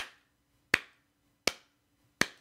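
Three sharp snaps, evenly spaced about three-quarters of a second apart, with near silence between them.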